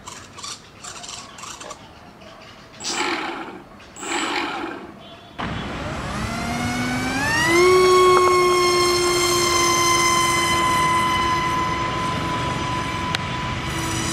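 A small electric motor with a propeller starts up about five seconds in with a sudden rush of air, its whine rising in pitch over a couple of seconds and then holding a steady high tone at full throttle, sagging slightly toward the end.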